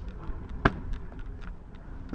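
Stunt scooter wheels rolling on a wooden mini ramp, a low rumble, with one sharp knock about two-thirds of a second in.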